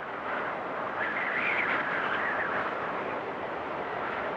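Steady outdoor ambient noise during a snowfall, an even rushing hiss that swells slightly about a second in.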